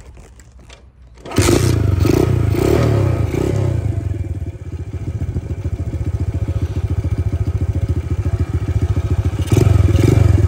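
A Honda CT70's small single-cylinder four-stroke engine starts suddenly about a second in, after a few light clicks. It runs fast at first, settles into an even idle, and is revved again near the end.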